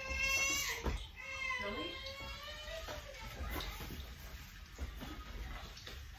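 Two high-pitched, drawn-out vocal calls in the first three seconds, the second wavering and sliding down in pitch, with a sharp click about a second in. A faint even hiss follows.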